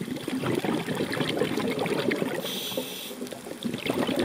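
Water moving and bubbling around an underwater camera: a dense, irregular bubbling crackle with scattered sharp clicks. A short steady hiss comes in about two and a half seconds in.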